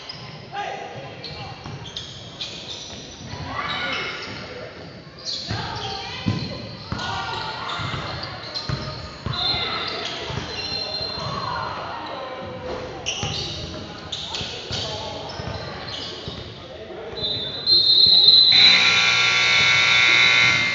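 Basketball bouncing on a gym's hardwood floor amid unclear voices echoing in the hall, then a scoreboard buzzer sounds loud and steady for the last two seconds or so, the end-of-game horn.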